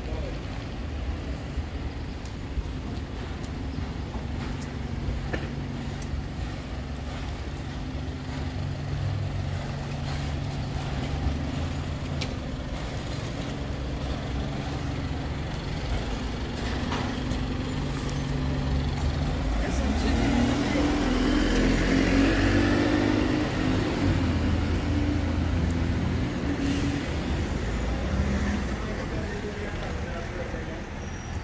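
Street traffic: a red double-decker bus's engine running close by. It gets louder for several seconds in the second half as the bus moves past, with cars going by.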